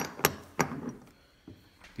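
Heavy 10-ounce Scottsdale Mint Stacker silver bars knocking against each other as they are stacked: a sharp click, two more within the first second, and a faint one about halfway through.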